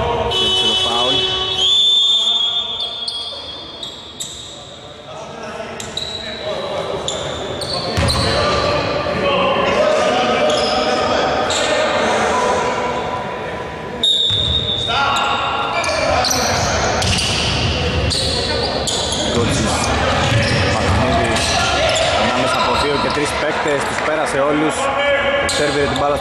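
A basketball game on an indoor court: the ball bouncing on the floor, with voices over it, echoing in a large gym hall.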